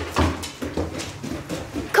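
Dog claws clicking on wooden floors and stairs in an uneven run of quick footfalls as the dogs move about.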